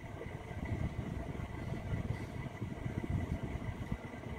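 A low, steady background rumble with a faint high whine running through it.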